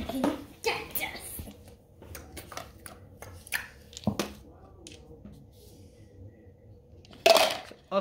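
Small wooden cubes being picked up and set down, giving scattered light clicks and knocks of wood on wood and card, one sharper knock about four seconds in. A louder burst of noise comes near the end.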